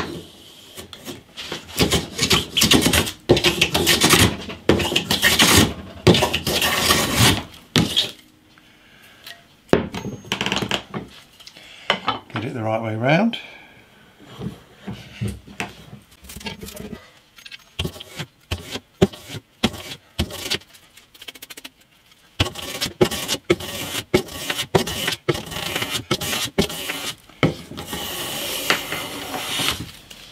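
Metal hand plane taking repeated strokes along the edge of a thin sycamore strip, each stroke a second or so of scraping hiss. The strokes pause about a third of the way in for a stretch of scattered knocks as the plane and wood are handled, then resume near the end.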